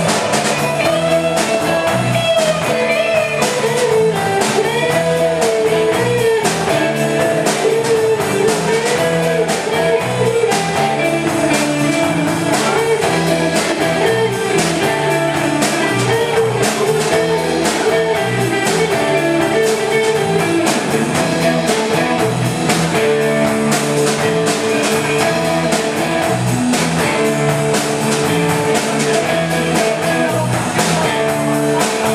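Live rock band playing an instrumental passage: electric guitars and bass over a drum kit, loud and steady. A lead line with wavering, bent notes stands out through roughly the first ten seconds.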